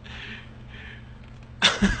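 A man bursts out laughing near the end, loud and sudden, over a low steady hum of large truck engines running.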